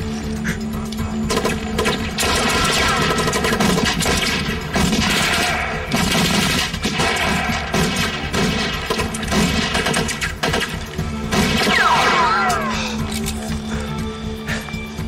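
Repeated gunfire from rifles and pistols in a firefight, many shots spread through the whole stretch, over tense orchestral background music. Near the end a falling whistle sweeps down in pitch.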